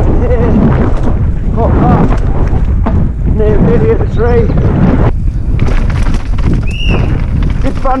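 Wind buffeting a helmet-mounted camera microphone as a mountain bike rides fast down a dirt forest trail, with a constant low rumble of tyres and rattling over the ground. A short high squeal comes near the end.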